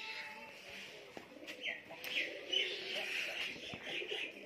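Pigeons cooing steadily, with a few short, higher bird chirps about midway through.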